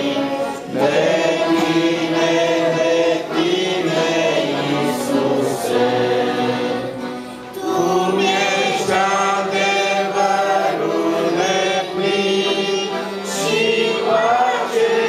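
A small group of voices singing a Romanian Christian song together in harmony, with the sung line held and continuous.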